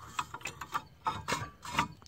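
Ratcheting wrench clicking in a series of irregular sharp clicks as it is worked back and forth on a brake caliper bolt.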